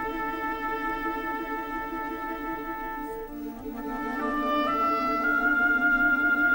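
Orchestral film music: long held higher notes over a fast, repeating lower accompaniment figure. The harmony shifts about halfway through and the music grows louder toward the end.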